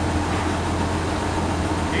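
The M8 Greyhound's freshly rebuilt Hercules six-cylinder petrol engine running steadily, a continuous low hum, as the armoured car moves under its own power.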